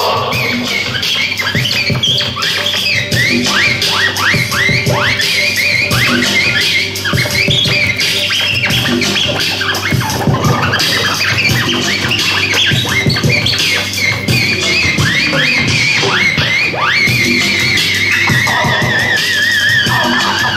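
Turntable scratching: vinyl records worked back and forth by hand against a mixer's fader, making quick rising and falling pitch sweeps over a hip-hop beat. Near the end a long, wavering high tone is scratched in.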